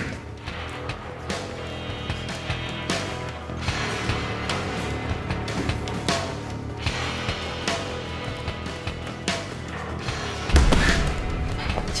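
Background score with kicks and punches landing on a padded focus mitt, a sharp smack every second or two, and a heavier thud near the end.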